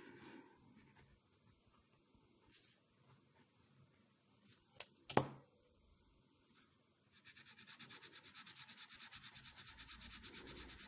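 Micador ColouRush coloured pencil shading back and forth on paper, a quick, even scratching of about six strokes a second that starts about seven seconds in. Two sharp clicks come a little before it, about five seconds in.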